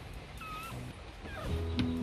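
Newborn Rottweiler puppy giving a couple of short, high, mewing squeaks, over background music.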